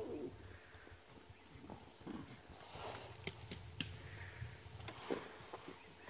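Faint, soft animal calls at intervals, with two light clicks a little past halfway.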